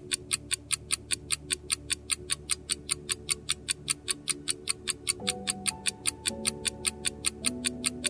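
Countdown-timer clock ticking sound effect, an even tick about four times a second, over soft background music whose notes change about five seconds in.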